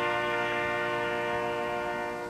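Ceremonial fanfare trumpets, long valveless herald trumpets hung with banners, holding one long steady note in unison.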